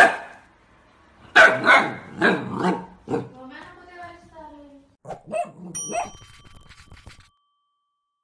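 Husky puppy giving a quick series of high barks, then a drawn-out whine that falls in pitch. Near the end a short chime rings out.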